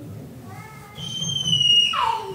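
A young child's high-pitched vocal squeal: a short high call, then a loud, shrill, held note about a second in that slides steeply down in pitch at the end.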